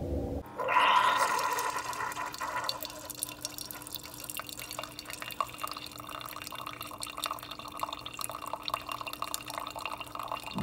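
Single-serve coffee maker brewing, a thin stream of coffee pouring and splashing into a mug, with a steady hum from the machine. It is louder in the first second or two after it comes in, about half a second in, then settles to a steady pour.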